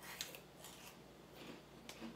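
Faint crunching of spicy chips being bitten and chewed, a series of short crisp crunches with the sharpest one just after the start.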